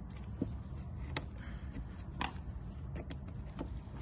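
Faint handling noise: scattered small clicks and taps as crab-cart bait is pushed into a PVA mesh tube on its plastic loading tube with a plunger, over a steady low rumble.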